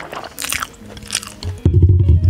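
Close-miked chewing of a mouthful of takoyaki, with two short crunchy bites about half a second and a second in, over background music whose loud bass comes in near the end.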